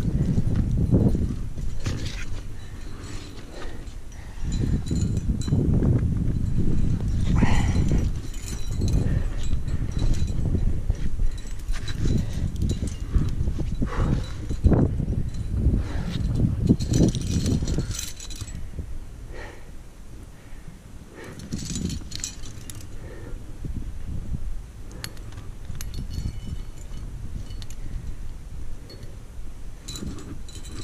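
Climbing rack clinking now and then as the cams and carabiners on the harness swing against each other, over uneven low rumbling on the camera microphone that is loud for the first two-thirds and quieter near the end.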